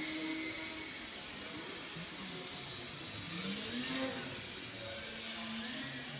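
The electric motor and propeller of a small indoor foam RC plane whine, the pitch gliding up and down as the throttle changes. The pitch rises and the sound is loudest about three to four seconds in.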